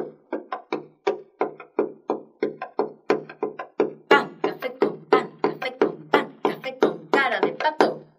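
Jarana jarocha strummed in a son jarocho dance rhythm: sharp, accented chord strokes, a few per second at first and denser from about four seconds in, with a quick rolled strum near the end.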